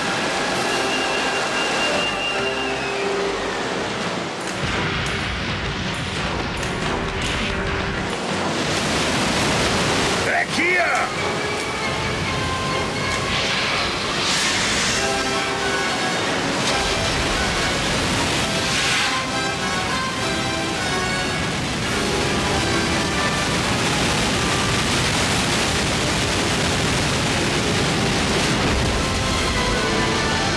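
Animated-film sound effect of a torrent of water rushing through a broken rock dam, a loud steady roar of water, with orchestral score playing over it. A short gliding cry rises and falls about ten seconds in.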